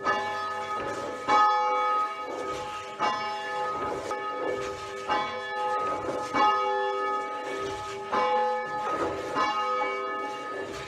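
Church bell ringing, struck roughly once a second, each stroke ringing on into the next.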